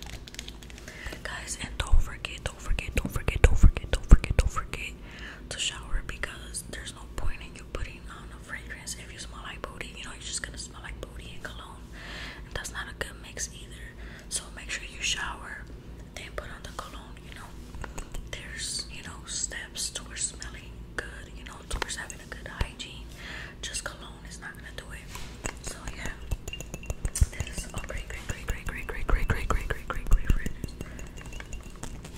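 A person whispering continuously, with a few low thumps about three to four seconds in.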